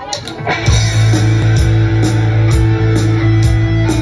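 Live rock band kicking into a song: a few drum hits, then about half a second in electric guitar and bass come in loud on a sustained low note, with drum and cymbal strokes about twice a second.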